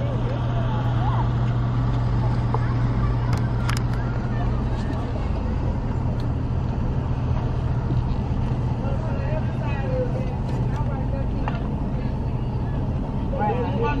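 A vehicle engine idling close by as a steady low hum, which eases off after about eight seconds. Scattered voices of people talking can be heard in the background, more of them near the end.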